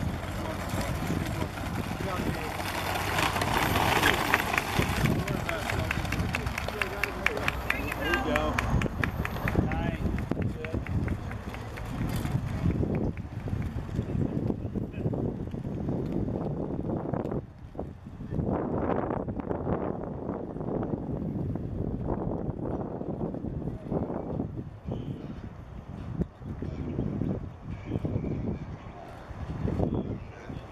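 Indistinct voices of people talking and calling out, over outdoor background noise.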